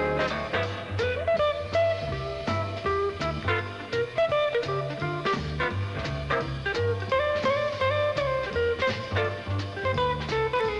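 Jazz trio playing: archtop electric guitar picking quick single-note lines over upright bass notes and drums.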